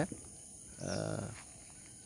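A cow lowing once, briefly, about a second in, over a steady high insect drone.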